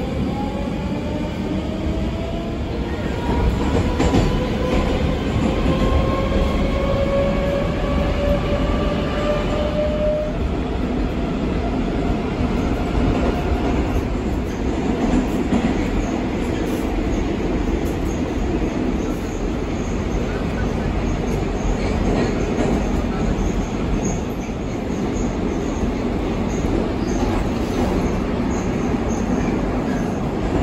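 Moscow Metro 81-740/741 'Rusich' articulated train heard from inside the car as it pulls away. The traction motors' whine climbs steadily in pitch for about the first ten seconds as the train gathers speed, then gives way to steady running noise of the wheels on the rails.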